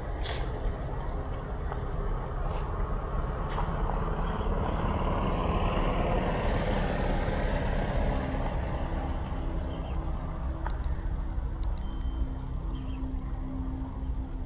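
A steady low rushing rumble that swells in the middle, with a few faint high chirps about two-thirds of the way in.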